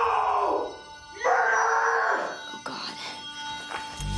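Two long, wordless cries from a young woman's voice, each held on one pitch. The second starts about a second after the first ends. Faint music follows.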